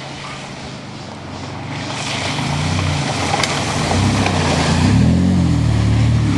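A van's engine revving and getting louder as it drives in, its pitch rising and falling with the throttle, over a steady rushing hiss.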